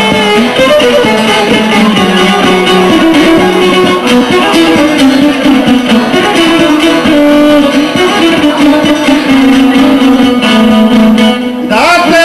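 Long-necked plucked lute and violin playing an instrumental introduction in traditional Bosnian izvorna folk style, with a continuous melody. A man's singing voice comes in right at the end.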